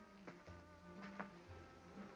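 Near silence: a faint, low, buzzing hum on the old film soundtrack.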